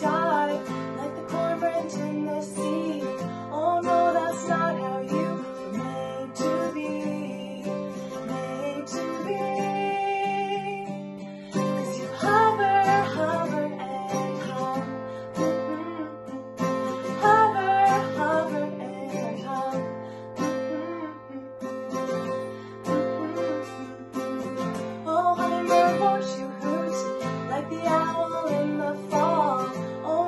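A woman singing while strumming chords on an acoustic guitar.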